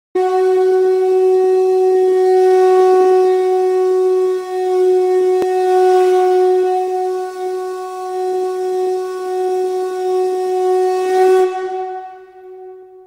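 A blown horn holding one long, steady note for about eleven seconds, then fading away at the end. There is a faint click about halfway through.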